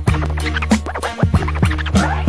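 Hip hop beat with a DJ scratching a record on turntables: quick repeated swipes up and down in pitch over a steady bass line.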